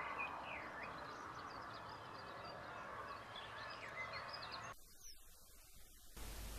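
Faint outdoor field ambience: a steady low hiss with small wild birds chirping and calling in the background. About five seconds in, the sound drops and thins out, leaving one short falling call.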